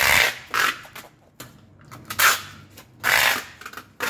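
Packing tape being pulled off a handheld tape dispenser and run across a cardboard box, in four short, loud tearing pulls.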